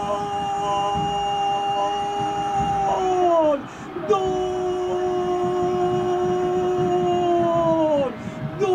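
A football commentator's drawn-out goal cry, "goooool", held on one steady pitch for about three and a half seconds and sliding down at the end. A breath follows, then a second long held cry of the same kind.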